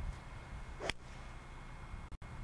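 A golf club striking a ball off the turf: one short, sharp impact about a second in, over a steady low background hum.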